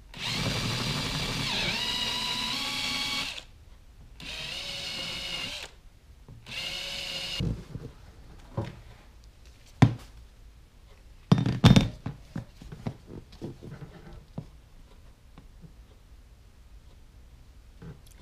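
Cordless drill running in three bursts, the first about three seconds long with its pitch dipping as it bites, then two shorter runs: a smaller bit starting a pilot hole through a motorcycle seat's plastic base. After it stops, a few sharp knocks and clicks.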